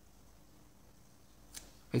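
Quiet room tone with a pen drawing faintly on paper, a single short click about one and a half seconds in, and a man's voice starting at the very end.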